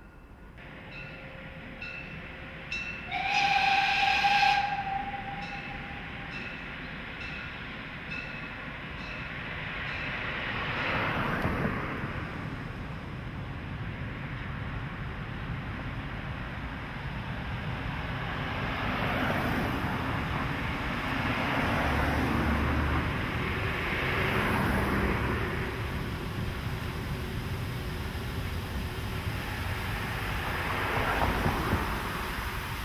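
Narrow-gauge steam locomotive's whistle: one loud blast of about a second and a half, a few seconds in. Then the rumble and hiss of the approaching steam train build steadily, while cars pass close by several times.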